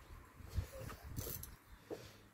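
Faint handling noises as a wrench is fetched: soft bumps, a brief rustle, and a light click near the end.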